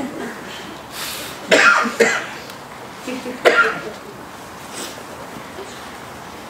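A person coughing in short, sharp bursts: a pair of coughs about one and a half seconds in and one more about three and a half seconds in.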